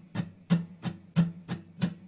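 Steel-string acoustic guitar strummed at a steady tempo, about three strokes a second, stronger down strokes alternating with lighter up strokes over a ringing chord.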